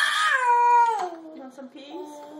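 A toddler's long, high whining wail refusing food, rising then falling in pitch over about a second, followed near the end by a shorter, lower and quieter whine.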